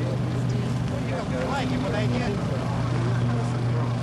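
A steady low engine hum, with several people talking over it.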